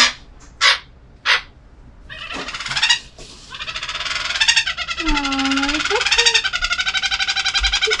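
Pet toucan calling: a few sharp clicks, then from about two seconds in a long, rapidly pulsing, croaking call that grows louder and keeps going.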